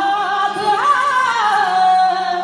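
Male qawwali voice singing a long, ornamented wordless line over sustained harmonium chords; the note wavers, rises about a second in, then slides down and settles on a held tone.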